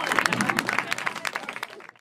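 A small audience clapping after a song, the claps thinning out and fading away near the end.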